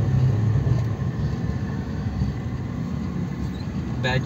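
Car engine and road noise heard from inside the cabin: a steady low hum with street traffic noise around it.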